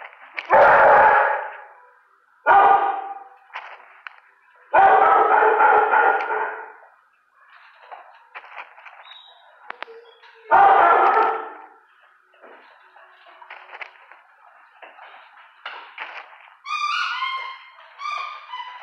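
Dogs barking in a hard-walled kennel room, echoing. There are four loud bursts of a second or two each in the first half, fainter barking between them, and a run of short higher-pitched calls near the end.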